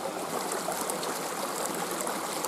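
A creek running steadily: an even rush of flowing water.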